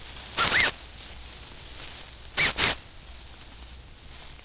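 A dog training whistle blown in two pairs of short, high pips, the second pair about two seconds after the first.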